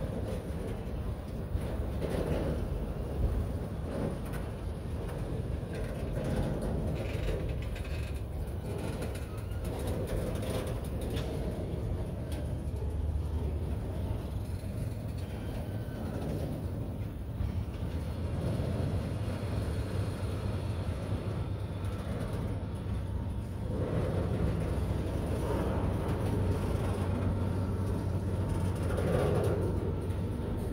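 Autorack freight cars rolling slowly past close by: a steady low rumble of steel wheels on rail that swells and eases as each car goes by, with occasional knocks and clanks.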